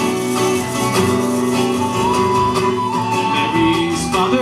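Irish folk band playing an instrumental passage between sung verses: strummed acoustic guitars, double bass and bodhrán under a sustained high whistle melody.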